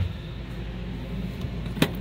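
A steady low hum, with a single sharp click near the end.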